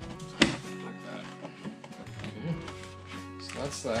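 Background music, with a single sharp knock about half a second in as the plastic splash pan is set in place around the pottery wheel head.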